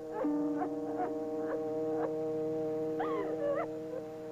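A woman sobbing in short, rising, whimpering catches, about two a second, with a longer wavering sob about three seconds in. Under it a held chord of dramatic music sounds throughout and fades near the end.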